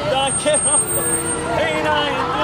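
Voices from a passing parade float, partly singing with a wavering vibrato, over the engine of the pickup truck carrying the float, which runs steadily.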